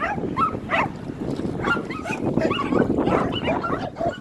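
Several dogs yipping and whining in short, high, repeated calls over a steady rough noise.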